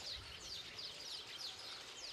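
Faint birds chirping: a quick run of short, falling chirps, several a second.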